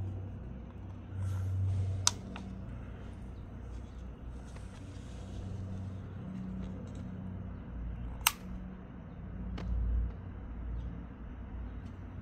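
Steady low rumble that swells a couple of times, with two sharp clicks, one about two seconds in and one about eight seconds in.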